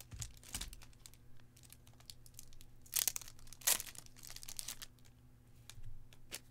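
Crinkly plastic packaging being handled on a table: scattered rustling and crackling, with two louder crackles about three seconds in and again a moment later.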